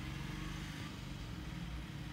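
A steady low background drone with a light, even pulsing, like an engine idling.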